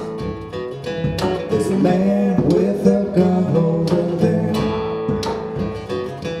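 A live acoustic band playing an instrumental passage between sung lines: strummed acoustic guitar over upright bass, with long held melody notes above.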